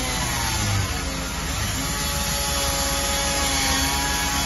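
Rhino 700 portable bandsaw mill running as it saws through a large log: a steady machine hum with several higher steady tones from the blade in the cut.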